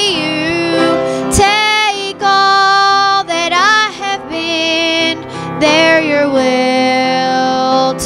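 A woman singing a slow gospel song into a microphone, holding long notes, with piano accompaniment.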